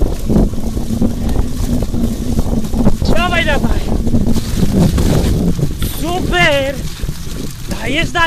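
Steady low rumble of wind on the microphone and the bike's tyres rolling over a rutted, muddy trail. Twice, about three seconds in and again about six seconds in, a short, high-pitched call rises and falls: the rider's voice urging the dog on.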